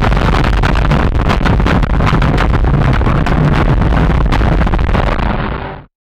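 Rally car engine running hard, heard from inside the cabin, with loud road noise and a steady patter of sharp clicks and knocks. It cuts off suddenly near the end.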